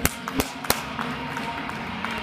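Three sharp claps in the first second, the first and last the loudest, over background music.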